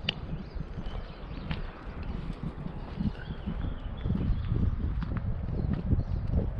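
Footsteps walking on a gravel path, an irregular series of soft low thuds.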